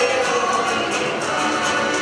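Live cueca played by a Chilean folk ensemble on accordion, guitars and bass guitar, with several voices singing together over a quick, even beat.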